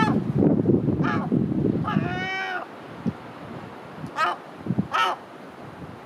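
Herring gull calling: about five short mewing calls, with one longer drawn-out call about two seconds in. A low rumble fills the first two seconds.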